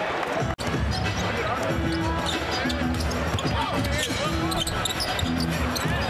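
Live basketball game sound in an arena: a ball being dribbled on the hardwood court, sneaker squeaks and crowd noise, with a brief cutout about half a second in.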